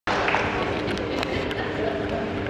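Steady murmur of an arena audience with scattered voices.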